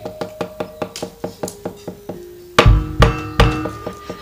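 Wayang kulit accompaniment. The dalang's rapid, even knocking, about six knocks a second, is typical of the cempala striking the puppet chest and keprak plates, with gamelan metallophone tones ringing over it. Two deep, heavy strokes land about two and a half and three and a half seconds in, followed by a held ringing tone.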